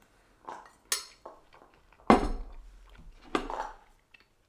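A metal spoon clinks and scrapes against a ceramic bowl several times, with a louder knock about two seconds in.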